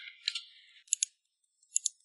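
Typing on a computer keyboard: a few soft key clicks, then two sharp double clicks, one about a second in and one near the end.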